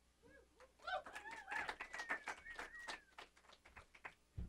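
Faint scattered audience clapping with whoops and a long, slightly falling whistle over it, dying away near the end.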